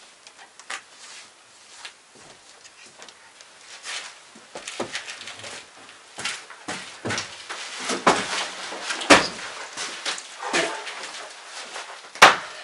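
A person moving about inside a small wooden hut: rustling of heavy clothing and a backpack, footsteps and knocks on wooden floorboards and the door. It is sparse at first, grows busier after about four seconds, and has one sharp knock about nine seconds in.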